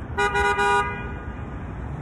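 A vehicle horn sounds once, a short steady toot of under a second, over a low rumble of street traffic.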